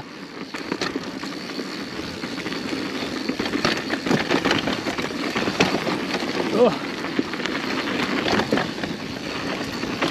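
Mountain bike riding down a dirt trail: a steady rush of tyre and trail noise with frequent clicks and rattles from the bike over bumps.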